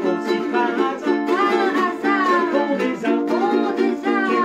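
Two ukuleles strummed together in a steady rhythm, with a voice singing a wordless melody over them that slides up and down in pitch.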